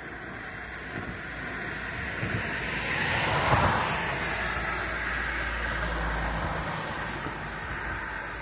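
A car driving past on the road, its tyre noise swelling to a peak about three and a half seconds in and then fading away, over a low wind rumble on the microphone.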